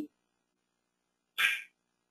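Dead silence, then about one and a half seconds in a short, breathy sound from the speaker, likely a quick breath drawn before speaking again.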